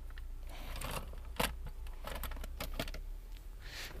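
Close handling noise: rustling with a scattered string of small clicks and knocks as tools, cloth and plastic sheeting are handled, the sharpest click about a second and a half in.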